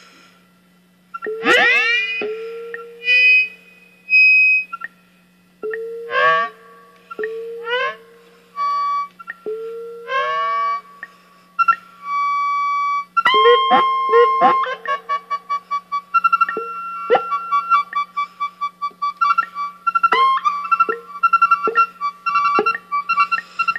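Ciat-Lonbarde Plumbutter analog synthesizer playing a self-modulating rhythmic feedback patch: separate tones that sweep up in pitch and settle, a few seconds apart, then, about halfway through, a faster stream of short pulsing blips. A low steady hum runs beneath.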